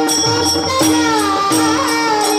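Kirtan devotional music: a voice singing a bending melody over a steady held note, with small hand cymbals striking in rhythm.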